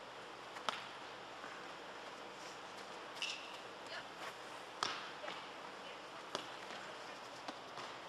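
A soccer ball kicked several times across artificial turf, each kick a sharp thud a second or two apart that echoes in a large indoor arena, over a steady hiss.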